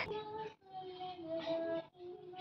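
A faint singing voice holding a few notes in turn, each a little lower than the one before.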